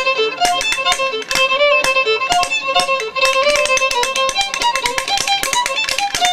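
A fiddle playing a lively reel, accompanied by a pair of wooden spoons clicking out a fast, steady rhythm.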